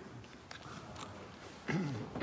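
Faint scattered clicks and rustles in a quiet room. A voice starts near the end.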